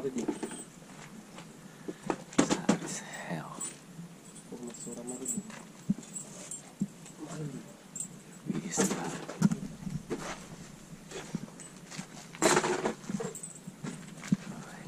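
Indistinct voices talking on and off, with a few scattered sharp knocks in between.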